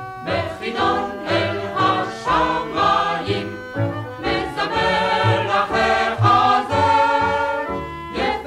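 Music: a choir singing with instrumental accompaniment, from a 1965 recording of a Hebrew song.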